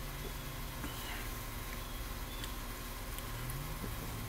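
Quiet drinking from a plastic gallon jug of iced tea, with a few faint clicks over a steady low hum.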